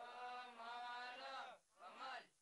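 Men's voices reciting a chalked Hindi word aloud together in a drawn-out, sing-song chant, repeating it after the teacher in a literacy lesson. One long drawn-out syllable, then a brief pause and the next syllable starting near the end.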